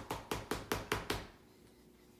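Rapid, evenly spaced taps, about five a second, of a finger flicking a plastic oral syringe to knock air bubbles out of the drawn-up suspension; the tapping stops a little over a second in.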